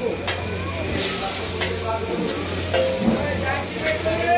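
Hot oil sizzling on a large flat iron frying pan where hilsa fish is fried, with a metal spatula clinking against the pan several times. A steady low hum runs underneath.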